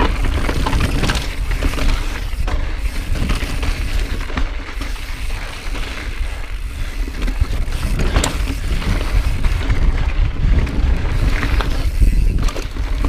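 Mountain bike riding over rocky dirt singletrack: constant wind buffeting on the camera microphone, tyres crunching over gravel and rock, and the bike rattling with scattered sharp knocks, one clear knock about eight seconds in.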